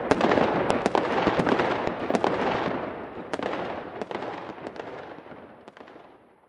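Fireworks crackling, many sharp pops over a dense hiss, dying away gradually to nothing by the end.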